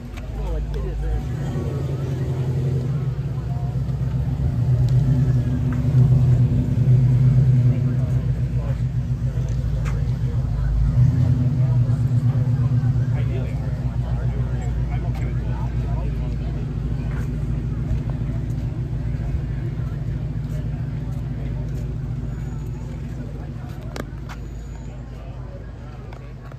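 A car engine running with a deep, steady rumble. It grows louder over the first couple of seconds, is loudest around the middle, then slowly fades away.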